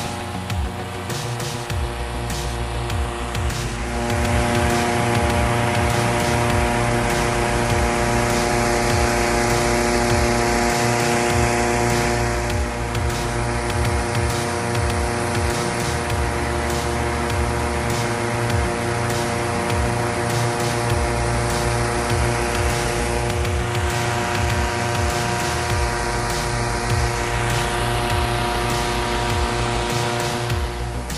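Background music with a steady beat and sustained chords, getting louder about four seconds in.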